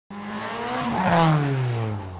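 A racing car passing by at speed: the engine note is loudest about a second in, then falls in pitch as it goes away.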